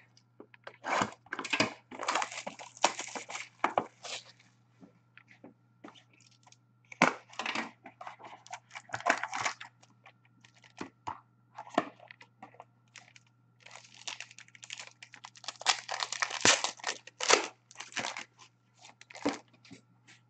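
Wrapping being torn off and crinkled and a cardboard trading-card box being opened by hand, in three bursts of tearing and rustling: from about one to four seconds in, around seven to nine seconds, and again from about fourteen to nineteen seconds, with lighter handling noises between.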